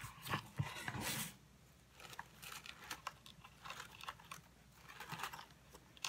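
Soft rustling and crinkling of tissue paper inside a cardboard box as it is handled, with a few light taps and scrapes of the box itself; loudest about a second in.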